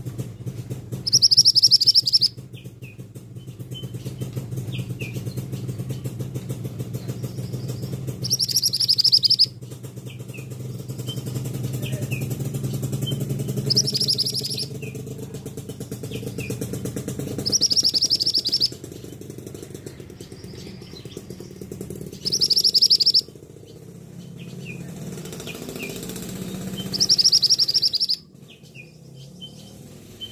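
Caged male minivet (mantenan) giving six loud, shrill, high-pitched calls of about a second each, several seconds apart, with fainter short chirps between them. A low steady hum runs underneath and stops near the end.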